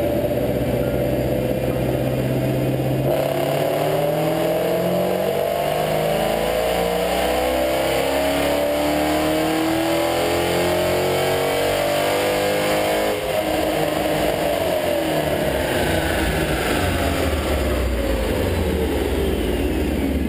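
Supercharged 4.6-litre V8 of a 2005 Roush Mustang with a Whipple twin-screw supercharger, making a loud chassis-dyno pull. The revs climb steadily for about ten seconds, then the throttle closes and the engine and rollers spin down, a high whine falling along with them.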